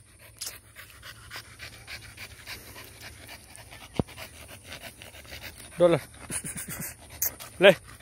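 American Bully dog panting hard, a quick run of breaths several times a second. There is a single sharp click about halfway through.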